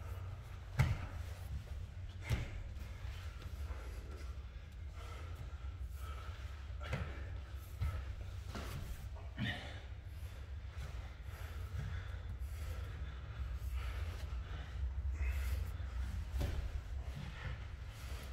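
Two people grappling on foam mats: bodies shifting and knocking against the mat, with heavy breathing and effort noises. The sharpest knocks come about one and two seconds in, over a steady low hum.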